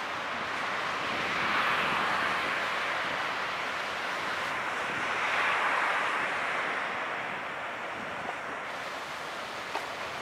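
Rushing wind and choppy water, swelling twice and easing off toward the end; no distinct engine note from the passing tug.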